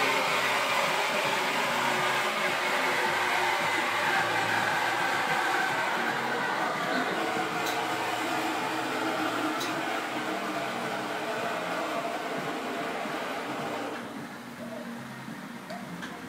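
A loud, steady mechanical whir and hiss with a few short clicks, dropping in level about two seconds before the end.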